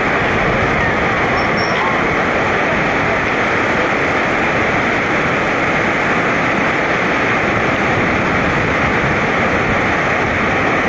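Whitewater river rushing steadily below: an even, unbroken wash of noise.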